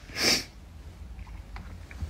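A man sniffs once, sharply and loudly through his nose, a short sniff near the start, as he is tearful from crying.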